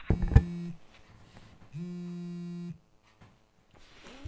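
A click, then a telephone ringing tone heard down the line: a short buzzy tone and, about a second later, a second one about a second long, as a call rings before it is answered.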